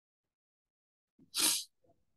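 Silence for over a second, then one short, sharp breath noise from the speaker about a second and a half in.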